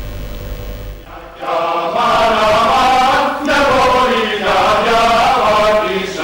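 Low hum for about the first second and a half, then a mixed choir of men and women starts singing a song in long held phrases with short breaks between them.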